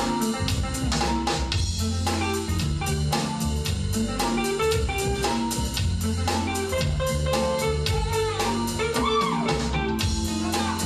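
A live band playing an R&B/jazz instrumental, with hollow-body electric guitar over a drum kit keeping a steady beat.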